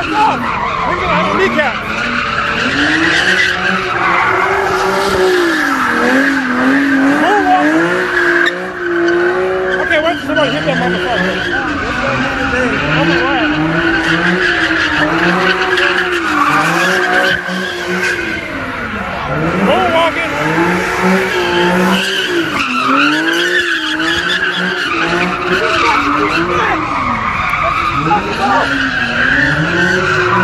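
A car doing donuts: its engine revs up and down in repeated swells every couple of seconds while the tyres squeal continuously against the asphalt.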